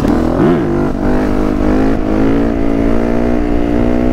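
Four-stroke Yamaha enduro motorcycle engine, heard close up: a quick rev blip about half a second in, then held on the throttle at a steady, slowly rising pitch as the bike lifts onto its back wheel.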